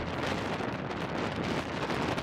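Wind blowing across the microphone, a steady rushing noise.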